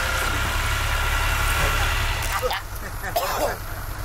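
A low, steady rumble, of the kind an idling engine or wind on the microphone makes, that drops away about two and a half seconds in. Faint snatches of voices come in the second half.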